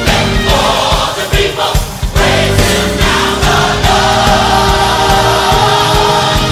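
Gospel choir singing with a band accompaniment, held sung notes over steady bass and drums. The music dips briefly about two seconds in, then the choir comes back in full.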